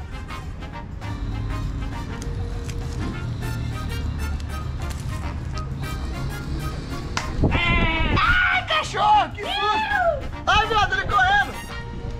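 Background music playing over rustling and knocks from a camera strapped to a moving goat. From a little past halfway, a loud, high, wavering voice gives several calls, each rising and falling in pitch.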